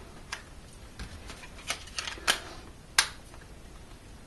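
A series of small plastic clicks and taps as a pocket camcorder's battery and battery cover are handled and fitted. There are about six separate clicks, the sharpest about three seconds in.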